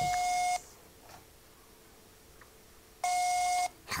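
Telephone call-progress tone from a smartphone on speaker: two identical steady beeps, each just over half a second long, about three seconds apart.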